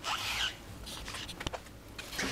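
A plywood disc shifted on the rim of a plastic trash bin: a brief scraping squeak at the start, then a few light clicks and a sharp tick.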